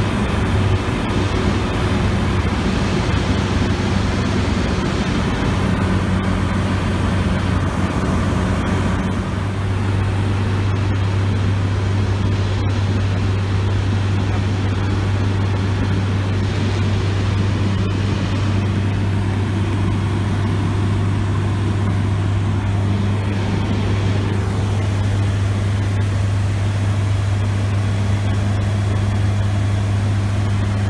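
Light aircraft's piston engine and propeller heard from inside the cabin in flight: a loud, steady low drone with an even rushing hiss over it.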